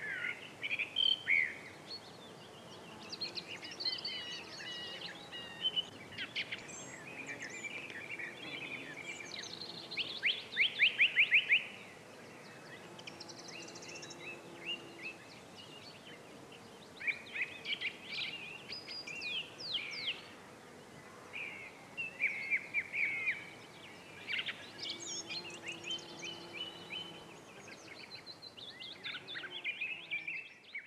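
Woodland songbirds singing on and off, with chirps and trilling phrases, the loudest a fast rapid-note trill about ten seconds in, over a faint outdoor background hiss.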